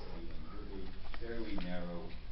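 A man speaking hesitantly in a reverberant hall, ending on a drawn-out, held 'uhh', over a steady low room hum.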